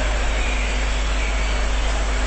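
Steady background hiss with a low hum, with no event in it: the noise floor of the talk's recording while the speaker pauses.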